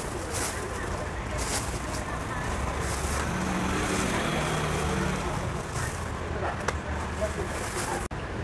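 Steady street noise with a motor vehicle running past about three to five seconds in. A thin plastic produce bag crinkles now and then as fruit is put into it.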